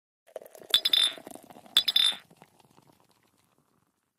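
Two bright clinks about a second apart, each ringing briefly, over a low steady tone that fades away: a sound effect under a channel logo title card.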